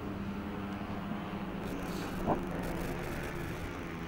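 Four-stroke racing scooter engines running at speed on a circuit, heard as a steady low engine drone from trackside.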